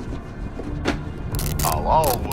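Television drama soundtrack: a steady low rumble with a few faint clicks, then a short vocal sound about a second and a half in.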